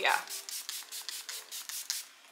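A fine-mist pump spray bottle of serum facial spray being pumped quickly over the face, giving a fast run of short hissing sprays, several a second.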